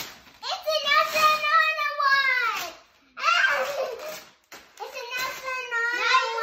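A young girl's high-pitched voice making long, drawn-out sounds with no clear words, in two stretches with a short pause between them.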